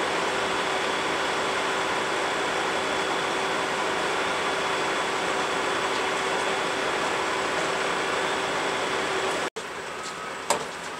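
Steady hum of parked emergency vehicles' engines running, with a faint steady tone over it. It cuts off abruptly about nine and a half seconds in.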